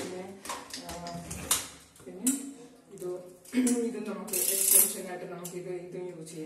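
A woman talking, with clicks and rattles of plastic and metal as the hose and wand of a Philips canister vacuum cleaner are handled and fitted together.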